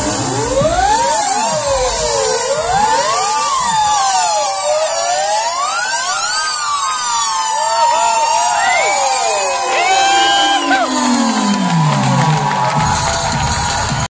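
A live rock band holds an end-of-song wash of sliding, swooping pitched tones, with no drums or bass. Near the end one tone dives steeply down low. A crowd cheers faintly underneath.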